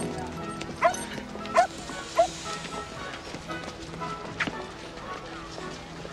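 A dog barking three times in quick succession, about two-thirds of a second apart, over quiet background music.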